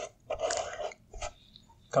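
Paintbrush loaded with wall paint stroking along the wall just below the ceiling line: one brushing swish of under a second, then a brief second touch of the bristles.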